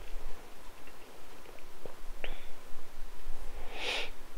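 Faint handling noises: a few small ticks, a short squeak about two seconds in, and a brief rustling rasp near the end, over a low room hum.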